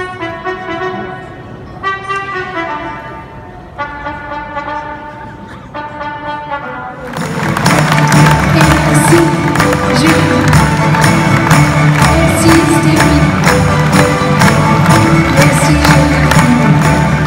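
Live orchestra music. The first seven seconds are quieter melodic phrases, then the full ensemble comes in much louder with drums and percussion keeping a steady beat.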